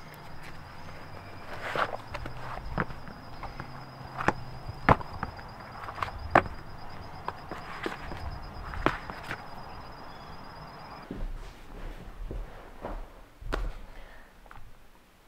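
Running shoes being unlaced and pulled off, and foam slides stepped into on brick paving: irregular soft knocks, scuffs and steps, about one a second.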